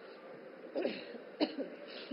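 A woman coughing and clearing her throat: two short coughs, the first a little under a second in and the second about half a second later.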